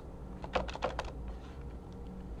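A quick run of about five keystrokes on a computer keyboard, bunched in the first second.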